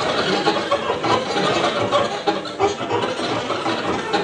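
Live free-improvised experimental music: a dense, choppy mass of short, rapidly changing sounds with no steady beat.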